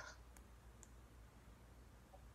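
Near silence: low room tone with two faint clicks, the first just under half a second in and the second just under a second in.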